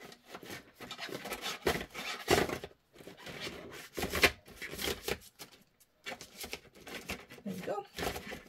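Paper cash envelopes and a budget folder being handled on a desk: irregular rustling and scraping with a few soft knocks, the loudest about two and a half and four seconds in.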